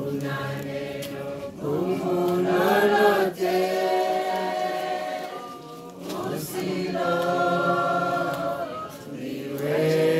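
A choir of voices singing slowly, in long held notes that glide from one pitch to the next.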